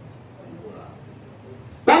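A pause in a man's amplified talk: low room noise with a few faint, indistinct sounds, then his voice comes back loudly near the end.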